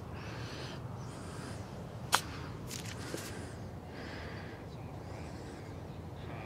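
A golf chip shot: one sharp click of the club striking the ball about two seconds in, followed by a few fainter ticks, over a steady faint outdoor background.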